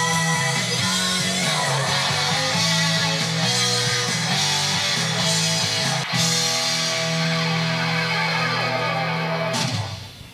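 A rock song with guitar playing back from a vinyl record on a Technics SD-QD3 turntable. The music stops abruptly just before the end.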